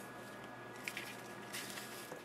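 Faint rustling of satin ribbon being handled and drawn around a card while a bow is tied, with a couple of light ticks about a second in and again shortly after.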